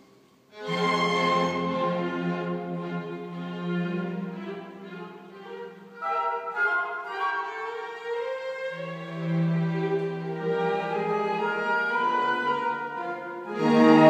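String orchestra of violins, violas, cellos and double bass playing classical music. After a brief hush the strings come in loudly about half a second in, and swell again near the end.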